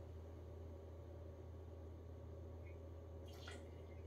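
Faint trickle of liqueur poured from a bottle into a metal jigger, over a steady low electrical hum, with a brief faint splash near the end as the measure goes into the shaker.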